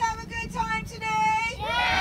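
A group of children calling back together in high, drawn-out shouts, several voices overlapping. The shouting swells louder near the end.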